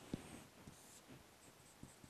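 Faint squeaky strokes of a marker pen drawing lines on a whiteboard, with a light tap of the tip on the board just after the start.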